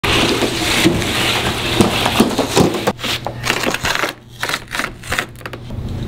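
Orange dimpled plastic Schluter tile underlayment membrane being unrolled and handled: dense crackling and rustling for about three seconds, then scattered clicks and light knocks.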